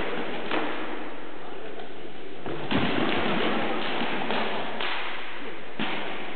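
Armoured fighters exchanging blows: a few dull thuds and knocks of swords striking shields and armour, with a cluster of hits about two and a half seconds in and another near the end.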